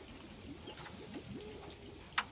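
Faint background with a few quiet short calls from chickens, the last drawn out for about half a second.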